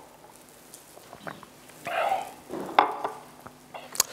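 A man taking a drink from a glass, with soft mouth and swallowing sounds. There is a sharp click about three seconds in and a few small knocks.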